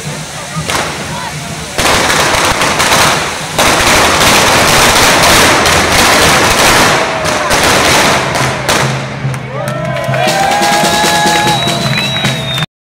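Correfoc fireworks: fountains of sparks hissing and crackling with rapid small bangs. They start suddenly about two seconds in and stay dense until about nine seconds. Near the end, a few held, gliding pitched tones sound over the fading crackle.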